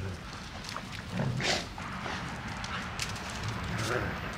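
Dobermans playing rough with each other, making dog sounds, loudest about one and a half seconds in.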